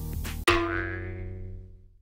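Held background music, cut by a sudden struck transition sound effect about half a second in: a ringing, pitched tone that dies away over about a second and a half into silence.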